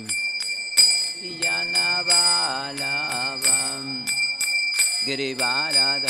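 A man singing a Vaishnava devotional bhajan in long, sliding held notes, with a pause of about a second just past the middle. Small hand cymbals (kartals) ring through it in a steady beat of about two strokes a second.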